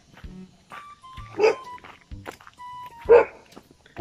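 A large dog barking twice, about a second and a half apart, at someone approaching, over background music.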